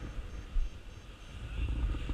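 Wind buffeting the microphone in uneven gusts, a low rumble that swells near the end.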